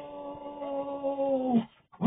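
A voice holding one long sung "Ohhh" on a single steady note, played back through a computer's speakers. It cuts off suddenly about a second and a half in.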